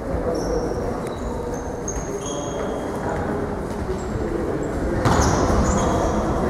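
Echoing sports-hall noise during an indoor football match: indistinct spectator chatter with short high squeaks, typical of trainers on the hall floor. The noise gets louder about five seconds in.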